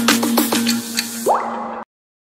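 Logo intro jingle: a held low tone under a quick run of short plucked notes that each drop in pitch, with a rising sweep near the end, then the sound cuts off suddenly.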